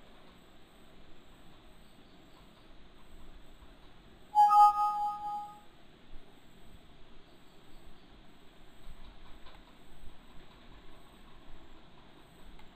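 Windows alert chime, a bright tone lasting about a second, a third of the way in: the sign of a warning dialog box popping up on screen. Otherwise faint room hiss.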